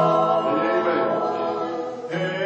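A small group of singers, women and a man, singing a gospel song in harmony with long held notes.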